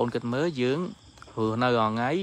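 A man speaking in two phrases, with a faint steady high-pitched chirring of crickets behind him.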